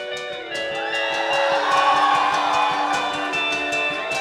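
Indie rock band playing a song's instrumental introduction live: sustained chords over a fast, even rhythmic pulse, swelling about half a second in and building to a peak around the middle.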